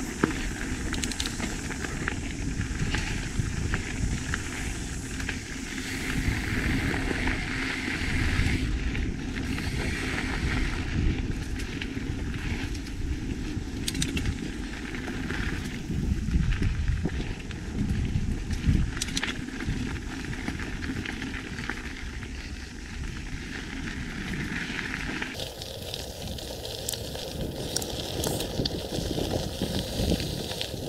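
Mountain bike rolling at speed along a dirt singletrack: a steady rumble of knobbly tyres on packed dirt and gravel, with the bike's frame and drivetrain clattering and a few sharp knocks over bumps.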